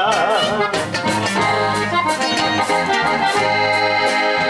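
Live norteño music in an instrumental passage between sung verses: an accordion plays the melody over strummed guitar and a steady bass line.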